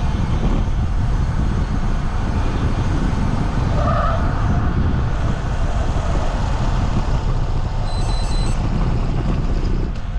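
Steady rush of wind and road noise on the microphone of a camera carried on a moving bicycle, heaviest in the low end. A quick run of four short, high electronic beeps comes near the end.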